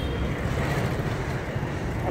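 Steady street traffic noise: a low rumble and hum of engines from passing auto-rickshaws, motorbikes and cars.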